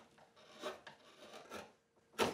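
Hand gouge carving a wooden violin plate: a few faint scraping strokes across the wood, each peeling off a shaving.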